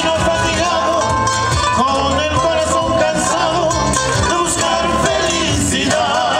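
A live band playing Latin American music on guitars and a cajón, with a wavering lead melody over a steady bass line.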